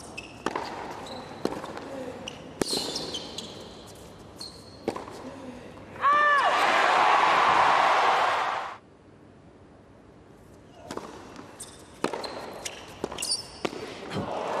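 Tennis rally on a hard court: racket strikes of the ball a second or two apart, with shoe squeaks. Then crowd cheering and applause for about three seconds, cut off abruptly. Near the end, a player bounces the ball before serving.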